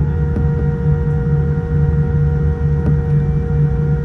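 Boeing 787-9 cabin noise on the ground: a steady low rumble with several steady whining tones above it.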